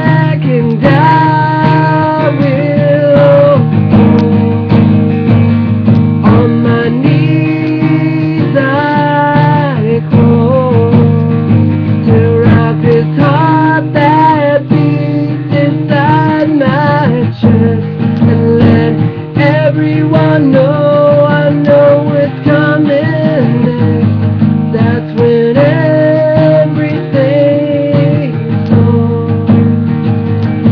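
A man singing with held, wavering notes, accompanying himself on acoustic guitar.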